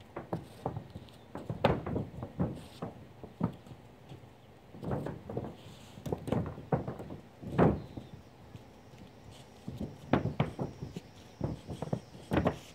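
Footsteps in flip-flops on a mobile home roof: an irregular series of short slaps and thumps, coming in clusters with brief gaps.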